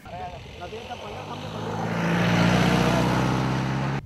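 A small motorcycle or scooter engine approaching along the road, growing steadily louder to a peak about two and a half seconds in and holding there until it cuts off.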